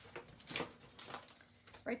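A few brief rustles and taps of paper and clear plastic packaging being handled, as a pack of designer paper in a cellophane sleeve is picked up.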